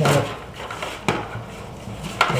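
Handling knocks from a laptop power supply being pressed against a laptop in its sleeve: two sharp knocks about a second apart, with rubbing and shuffling between them.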